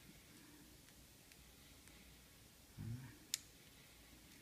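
Near silence: quiet room tone, broken a little under three seconds in by a brief low murmur of a voice and, just after it, a single sharp click of small parts being handled.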